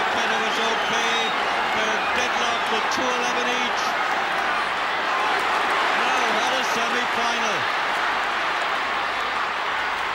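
A large stadium crowd cheering steadily at a hurling match, with individual voices shouting above the din.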